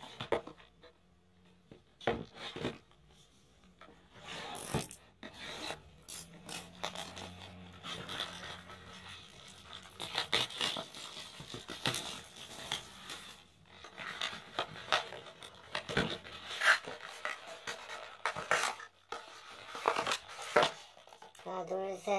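Plastic shrink wrap being torn and peeled off a cardboard trading-card box, crinkling and crackling in irregular bursts, with handling of the box.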